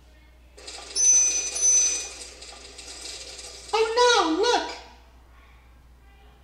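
A sound effect from an animated lesson: a noisy burst with thin, high ringing tones that lasts about three seconds and fades. About four seconds in, a short, high-pitched vocal exclamation follows.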